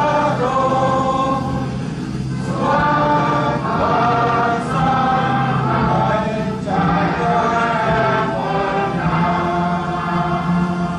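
A mixed group of men, women and children singing together, a slow song in long held phrases with brief breaks between lines.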